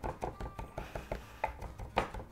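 Handmade carbon-steel chef's knife chopping raw venison on a wooden chopping board: a fast, uneven run of sharp taps, several a second, as the meat is diced almost to a mince by hand for tartare.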